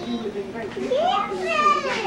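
A young child's high-pitched voice: a long, wordless cry that starts about a second in, rises and then falls away.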